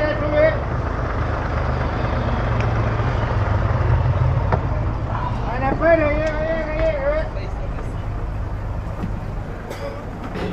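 Chicken bus engine running with a steady low rumble, somewhat louder for a few seconds a couple of seconds in. A voice calls out briefly around six seconds in.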